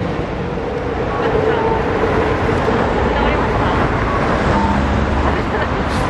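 Road traffic passing on a busy city street: a steady noise of engines and tyres that grows a little in the first second and gains a low rumble in the second half, with voices in the background.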